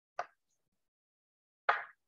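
Two short clicks from a computer keyboard or mouse, a faint one just after the start and a louder one near the end, as the font size is adjusted.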